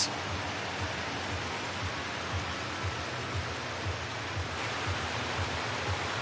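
Steady crowd noise of a large stadium: an even wash of many distant voices and movement, with no single voice standing out.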